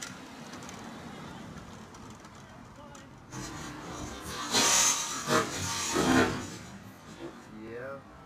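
Street traffic noise, then people's voices from about three seconds in.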